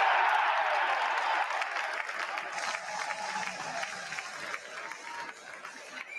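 Stadium crowd cheering and applauding a goal, loudest at the start and slowly dying down.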